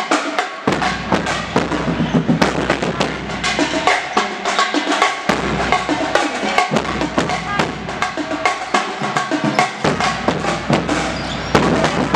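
A band playing a drum-heavy tune, with bass drum and snare hits driving a dense beat under pitched melody, echoing in a gymnasium.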